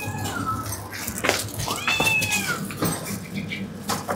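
A cat meowing twice: a short meow at the start and a longer, arching one about two seconds in, with a few light knocks between.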